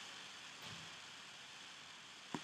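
Faint, steady hiss of background noise on a Skype call, with no other clear sound.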